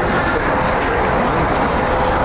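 Steady outdoor street and traffic noise: a continuous low rumble with a faint steady hum.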